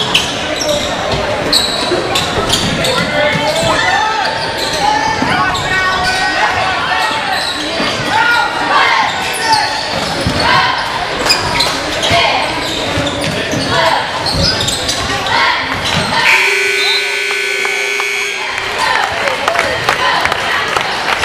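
Basketball game sounds in a gym: a basketball bouncing and crowd voices. About three-quarters of the way in, the scoreboard horn sounds one steady tone for about two seconds, signalling the end of the game.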